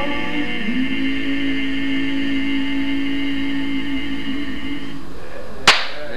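Male barbershop quartet singing a cappella, holding the song's final chord for about five seconds, with the lowest voice sliding up into it near the start; the chord then cuts off. A single sharp impact sounds just before the end, as applause is about to begin.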